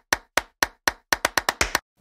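Edited-in sound effect for an animated title card: a series of sharp knocks, four spaced about a quarter second apart, then a quicker run of about seven more before it stops.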